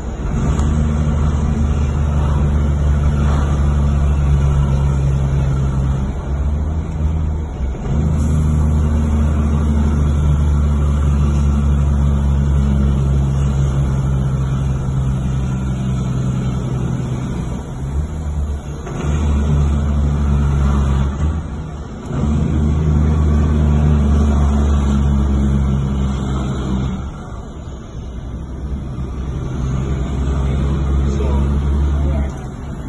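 Diesel engine of a loaded Peterbilt dump truck running with a loud, steady low drone, heard from inside a car following close behind. The drone dips briefly a few times, typical of the driver shifting gears.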